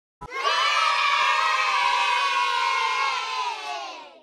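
A group of children cheering together in one long held shout, gliding slightly down in pitch and fading out near the end.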